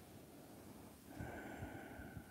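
A faint breath out through the nose about a second in, with soft low bumps of a body shifting on a yoga mat as she curls up.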